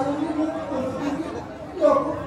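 Speech: a single performer's voice delivering stage dialogue.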